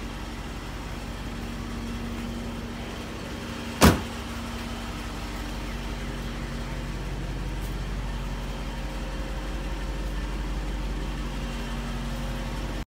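A Jeep Grand Cherokee SRT8's door shut once with a single sharp thump about four seconds in, over a steady low hum.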